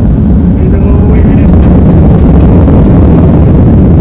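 Airliner engine noise heard inside the passenger cabin: a loud, steady low rumble.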